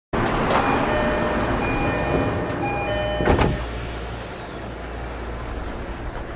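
Tokyo Metro 10000 series train standing at a platform: steady chime-like tones sound in pieces for the first three seconds or so, and a loud thump comes about three seconds in. A steady low hum follows.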